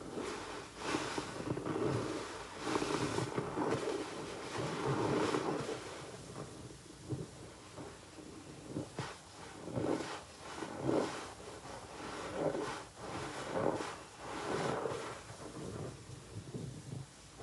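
Soap-soaked sponges squeezed and squished by gloved hands in a basin of thick suds: wet squelching and crackling of foam. The squeezes come closely together at first, then about one a second.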